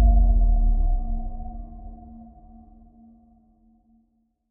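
Deep cinematic bass boom under a title card: a low rumble with a steady ringing hum over it, fading out over about three seconds to silence.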